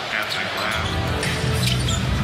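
Music with low, sustained notes that come in a little before the middle and hold steady, under faint voices.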